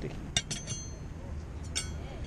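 Steel hedge-trimmer blades clinking against each other as they are handled: three sharp metallic clinks, each with a brief ring, two close together early and one near the end.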